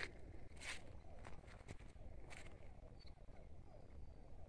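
Faint chorus of small frogs calling, many short falling notes overlapping continuously. A few footsteps are heard in it.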